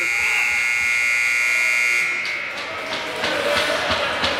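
Ice rink's end-of-period horn sounding a steady, high-pitched buzz as the period clock runs out, cutting off about two seconds in. After it stops there are scattered knocks and general rink noise.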